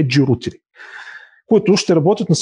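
A man talking, with a short pause about half a second in for an audible in-breath before he goes on speaking.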